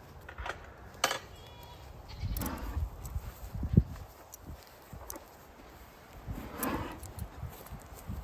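Hooves of a Jersey cow and a person's footsteps walking on dry, hay-strewn ground, with scattered clicks and rustles and a sharp knock a little before four seconds in.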